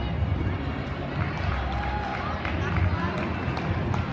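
Indistinct crowd voices and a steady low rumble of a busy competition hall, with a few sharp knocks near the end.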